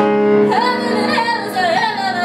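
A woman singing a cabaret song, holding a wavering note over sustained instrumental accompaniment; her voice comes in about half a second in.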